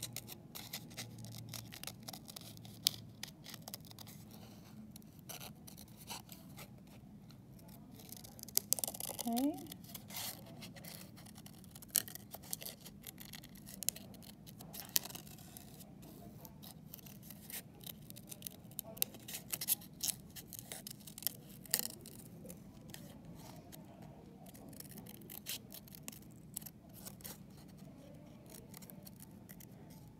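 Scissors cutting paper by hand, with short, irregular snips and blade clicks.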